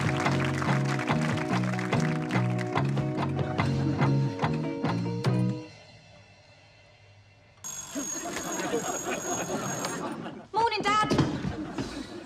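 A theme song with backing music ends about six seconds in. After a short pause a bell rings steadily for about two seconds, followed by a man's voice and laughter.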